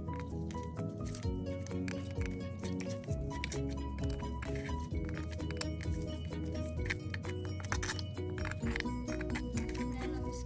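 Background music: a melody of short, even notes over a held low bass, with light percussion.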